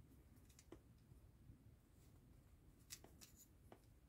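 Near silence, broken by a few faint, short clicks of a plastic scale-model brake disc being handled and pressed back onto its wheel hub.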